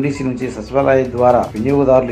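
A man's voice reading news narration in Telugu, continuous and unbroken.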